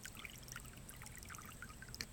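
Faint sloshing and trickling of pond water stirred by a golden retriever dipping its head in the water, in small irregular splashes and drips.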